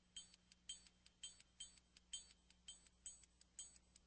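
Faint, even clock-like ticking: about two sharp ticks a second, with softer ticks between them, over a low steady hum.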